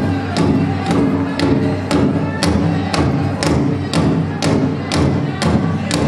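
Powwow drum group striking a large drum in unison at about two beats a second, with the singers' voices carried over the beat, playing a fancy shawl contest song.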